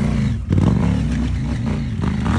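Dual-sport motorcycle engine revving under load as the bike climbs a dirt slope. The engine dips briefly, then surges louder about half a second in.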